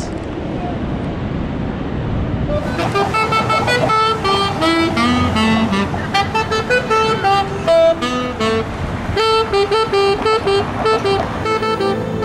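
Street traffic noise, then about three seconds in a saxophone starts playing a slow melody of held notes that step up and down.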